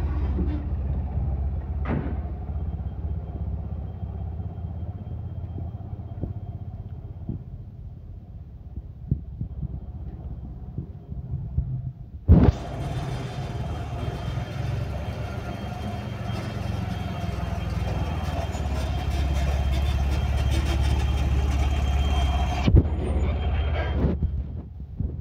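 Tata Ace Gold pickup's engine idling with a steady low rumble. For much of the second half a loud rushing noise on the microphone lies over it, starting and stopping with a knock.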